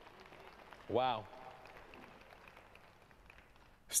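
A pause in the speech: low background hiss with faint voices underneath, broken about a second in by one short voiced exclamation whose pitch rises and falls.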